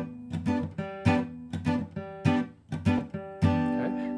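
Acoustic guitar playing a reggae-style rhythm on a four-string G chord (third-fret shape on the D, G, B and high E strings): the bass note picked first, then short strums on the high three strings, repeated. It ends on a ringing chord near the end.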